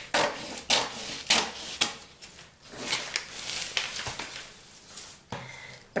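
Scissors cutting through stiff kraft pattern paper: a run of crisp, repeated snips as the blades close.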